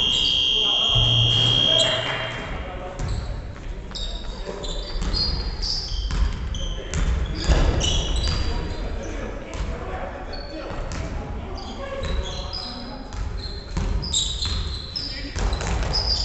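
Basketball game on a wooden gym floor: sneakers squeaking, the ball bouncing and players calling out, echoing in a large hall. A steady high tone is held for about the first two seconds.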